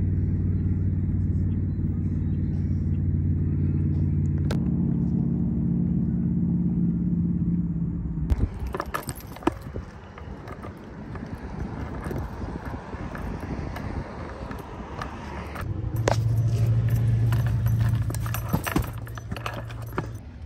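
A vehicle engine running as a steady low hum that steps up slightly in pitch about four seconds in. In the middle it drops away under rustling and sharp clinks, and the hum returns near the end.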